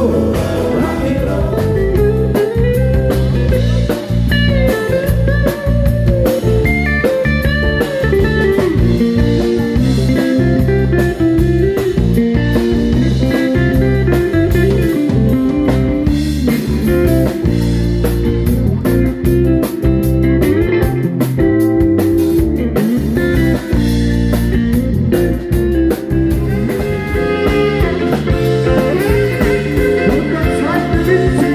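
Live band music with electric-acoustic guitar and drum kit, and singing in the mix, playing steadily throughout.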